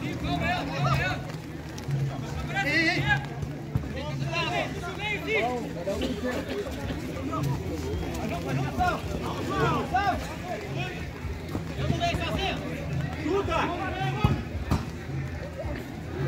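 Players' voices calling and shouting across a football pitch, over a steady low hum, with one sharp knock near the end.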